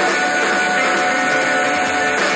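Loud live band music: a folk-rock ensemble of electric guitars, drums and fiddles playing together, with sustained notes over a dense wash of sound.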